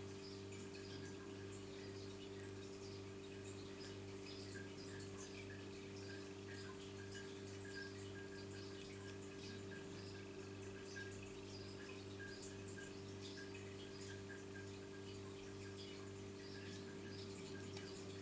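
A low steady hum, with faint scattered soft ticks of wet acrylic paint dripping off the edges of the tilted canvas.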